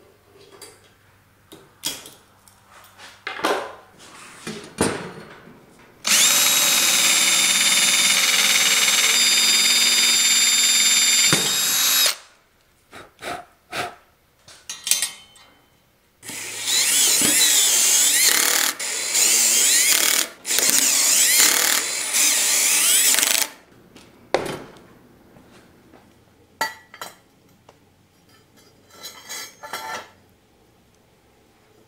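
A DeWalt DCD780 cordless drill/driver runs in two long spells of about six and seven seconds, working through the hinge holes into the steel tubing. Its pitch wavers during the second spell. Clicks and knocks of metal parts being handled come between the spells.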